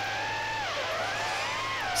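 Motors of a BetaFPV HX115 3-inch quadcopter whining in flight, heard from a distance; the pitch holds, dips about two-thirds of a second in and climbs back as the throttle changes through a turn. The tone stays smooth with no wobble, a sign of no prop wash after the tune.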